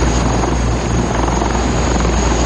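Attack helicopter's rotor and turbine engine running steadily and loudly, a continuous low drone as it rises from cover.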